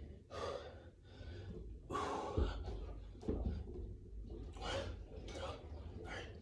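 A man's heavy, gasping breaths during push-ups, about five short breaths in and out, with a couple of dull thumps near the middle.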